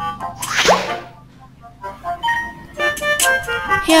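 A cartoon swoosh sound effect about two-thirds of a second in, then after a short lull a bright, stepping musical jingle through the second half. A voice starts right at the end.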